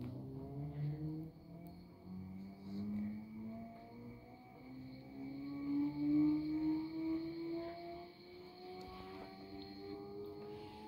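Maytag Bravos XL top-load washing machine speeding up in its spin, with the motor and tub giving a whine of several tones that climb slowly and steadily in pitch. It swells loudest about six seconds in.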